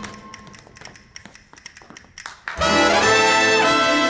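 Recorded brass band music: after a quiet stretch with faint clicks, a loud brass section comes in about two and a half seconds in, playing long held chords.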